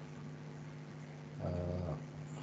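A brief, low, steady hummed "mm" from a man's voice near the end, over a faint steady low hum.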